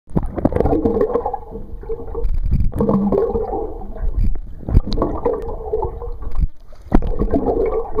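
Muffled underwater sloshing and gurgling picked up by a submerged camera. It surges and fades about every two seconds, with a few sharp clicks in between.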